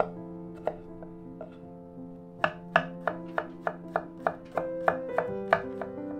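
Chef's knife chopping garlic cloves on a bamboo cutting board: a few spaced cuts, then from a little before halfway a quick, even run of about four chops a second.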